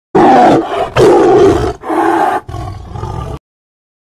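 A tiger roaring in about four loud strokes, the last one softer. It cuts off suddenly.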